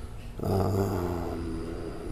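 A man's low voice holding one drawn-out, steady hesitation sound (a hum or 'uhh'), starting about half a second in and fading slowly over about a second and a half.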